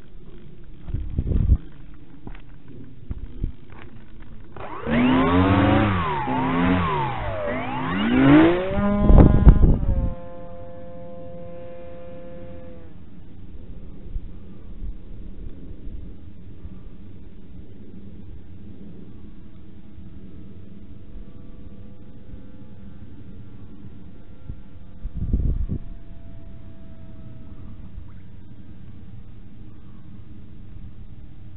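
Electric motor and propeller of a foam-board RC Cessna 172 in flight: a buzzing whine starting about five seconds in, its pitch swinging up and down several times, then settling into a steady, fainter drone that fades out, and returning faintly later on. Two brief low thumps on the microphone, near the start and late on.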